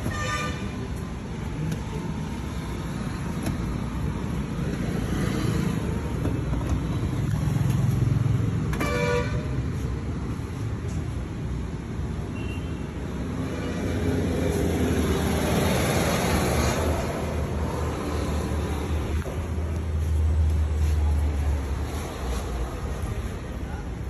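Road traffic with a steady low rumble, and two short car-horn toots: one at the very start and another about nine seconds in.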